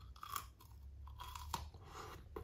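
A person biting into and chewing a Nestlé Choco Crossies cluster of cornflakes, chocolate and salted caramel pieces: a quiet, irregular run of crisp crunches.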